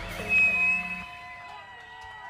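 A live band's last notes dying away at the end of a song: a held high note for about a second, then the amplified instruments ringing out faintly.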